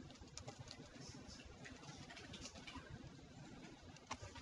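Faint computer keyboard typing over near-silent room tone.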